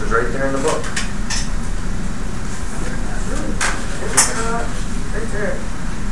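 Classroom room noise: a steady hum with faint, indistinct murmured voices and a few sharp taps or clicks, the loudest about four seconds in.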